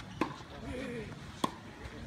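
Tennis ball struck in a rally, two sharp hits about a second and a quarter apart.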